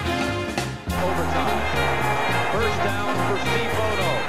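Brassy, big-band style background music over the highlights. About a second in it dips briefly and a new passage starts.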